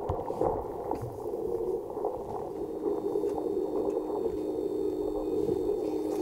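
Muffled low drone from a video trailer's soundtrack played over room loudspeakers, with a steady low tone joining about halfway through.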